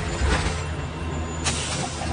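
Low, steady engine and road rumble heard from inside a moving bus, with a short hiss of air, typical of an air brake, about a second and a half in.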